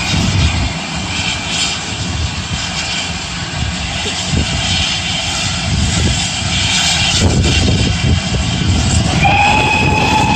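A steam tank engine standing at a platform with a steady low rumble and a few short knocks. About nine seconds in, its steam whistle sounds one held note, signalling departure.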